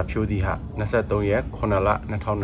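A man reading aloud in Burmese, over a faint, steady, high-pitched insect chirring from the surrounding vegetation.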